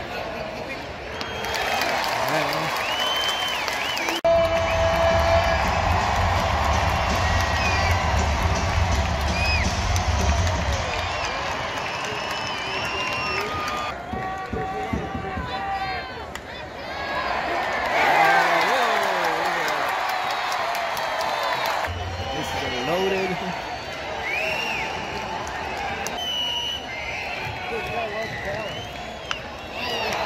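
Ballpark crowd: nearby fans' voices and chatter, stadium PA music with a heavy bass from about four to eleven seconds, and a swell of crowd cheering a little past the middle. The sound changes abruptly a few times.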